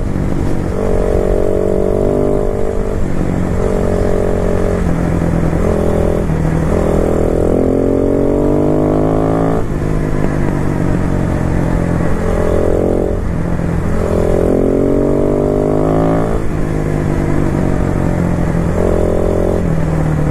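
Motorcycle engine under way, accelerating in repeated surges: the note climbs in pitch for a second or three, then drops back as the throttle closes or a gear goes in, about seven times, over a steady rush of wind noise.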